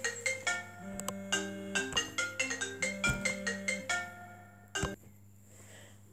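Telephone ringtone playing a melody of short notes for an incoming call. It stops about four seconds in, followed by a single click.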